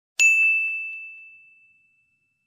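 A single bright bell-like ding: one sharp strike a fraction of a second in, ringing on one high tone that fades away over about a second and a half.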